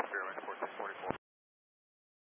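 A pilot's voice over air traffic control radio, band-limited and narrow, reading back a tower frequency; the transmission cuts off about a second in, leaving dead silence.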